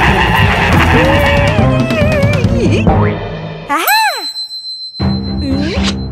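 Cartoon soundtrack music, broken off just before four seconds in by a single sliding cartoon sound effect whose pitch rises and falls like a boing. The music comes back about a second later.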